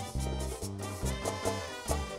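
A live Colombian tropical dance band playing, with horn lines over a bass beat that lands about twice a second.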